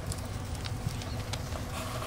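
A few faint, light taps of a deer fawn's hooves on a concrete patio as it walks, over a low steady background noise.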